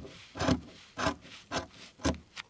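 Large sharp scissors snipping through a bundle of yarn tassels and masking tape, one cut after another at about two a second.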